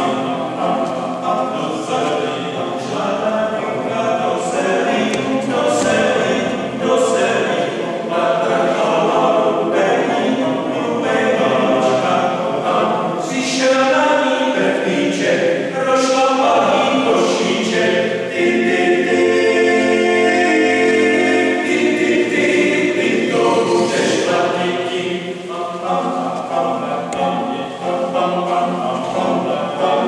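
Small male a cappella vocal ensemble of five men singing together in chordal harmony, with a long held chord a little past the middle.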